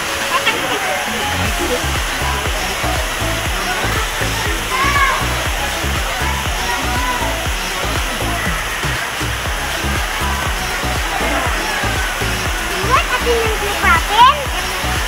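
Steady rushing of a waterfall and its stream, with distant voices and calls of people over it and a few louder sounds near the end.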